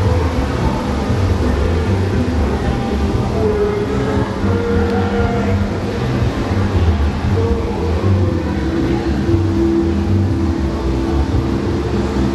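Steady low rumble of the electric blowers that keep an inflatable luminarium inflated, with slow, long-held ambient music tones over it that change pitch now and then.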